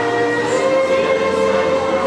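Amplified violin playing over a recorded backing track, with a long held note beginning about half a second in.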